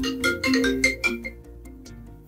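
Mobile phone ringtone playing a melody of short, bright notes, louder for about the first second and then quieter.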